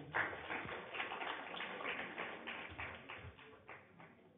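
Audience applauding: a short burst of scattered clapping that starts abruptly and dies away near the end.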